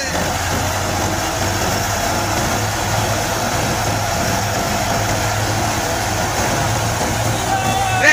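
Tractor-driven threshing machine running steadily: the New Holland 640 tractor's engine and the thresher's drum make an even, continuous noise with a low hum under it.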